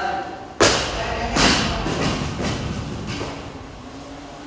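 Loaded barbell with rubber bumper plates dropped from overhead onto a rubber gym floor: a loud thud about half a second in, then a second impact as it bounces, and the clatter settles.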